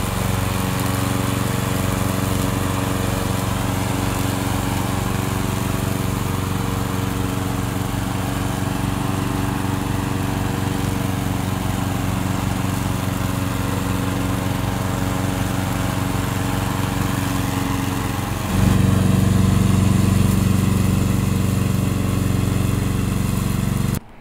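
Gasoline engine of a remote-controlled tracked lawn mower running steadily while the mower works through tall grass. About three quarters of the way through, the engine sound jumps louder.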